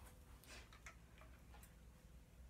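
Near silence in a rest between flute passages, with a few faint, scattered clicks of the flute being handled as it is brought back up to play.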